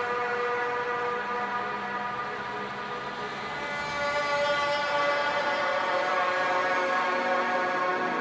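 A sustained synth chord held in a quiet, drumless stretch of a phonk track, moving to a new chord and growing louder about halfway through.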